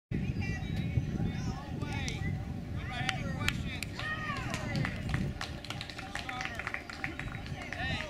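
Indistinct chatter of several people, no words clear, over a steady low rumble, with scattered small clicks.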